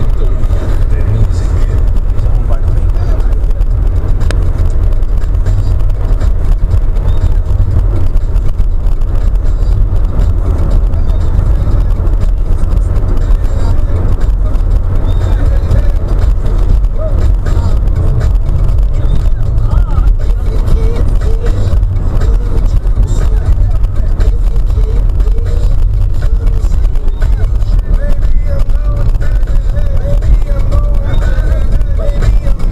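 Steady in-car driving noise picked up by a dashcam: engine and road rumble, loud and low, with indistinct voice-like sound underneath.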